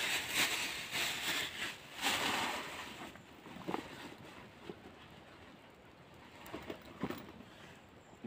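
Thin plastic bag being crumpled and crinkled by hand, a rough rustling for about the first three seconds. After that come a few small clicks and knocks as things are handled.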